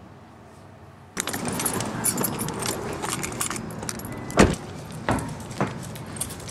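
Keys jangling in hand with many small clicks, along with passing street traffic. It starts abruptly about a second in, with a sharp knock a little past the middle.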